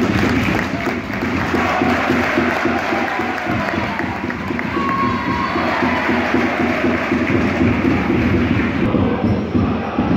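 Football crowd in the stands cheering and shouting, a steady dense mass of voices.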